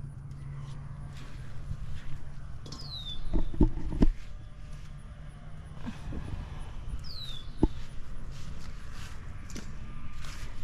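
Tomato leaves and stems rustling as cherry tomatoes are picked by hand from a caged plant, with a few sharp knocks, the loudest about three and a half to four seconds in. A short high chirp falling in pitch sounds twice, about four seconds apart, over a steady low hum.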